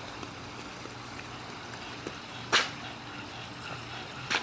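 Quiet backyard ambience with a steady low hum, and one sharp click about two and a half seconds in.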